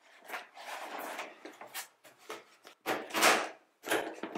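Synthetic camouflage clothing rustling as it is pushed into a hard plastic double bow case, then the case lid being closed, in a series of scrapes and knocks that are loudest about three seconds in. A metal latch is handled at the very end.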